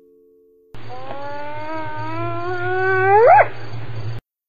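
A single long animal howl that starts abruptly, climbs slowly in pitch, then sweeps sharply upward and breaks off, over a low steady hum.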